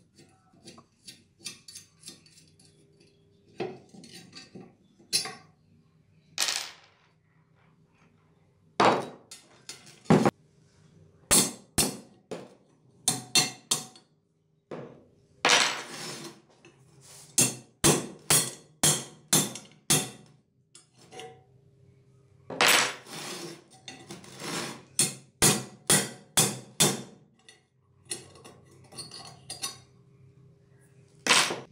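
Rusty steel and cast-iron gas stove parts being worked apart with pliers on a workbench: repeated sharp metallic clinks and knocks, coming in bursts with short pauses between.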